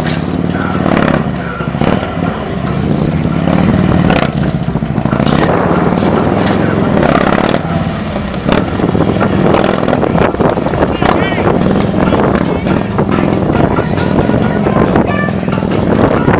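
Engine of a heavy police touring motorcycle running at low, slightly varying revs while it is ridden slowly through a tight cone course, mixed with music and voices.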